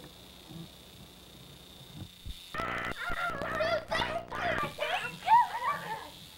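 Children's wordless, high-pitched shrieks and yells gliding up and down in pitch, starting about two and a half seconds in and lasting about three seconds, during rough play.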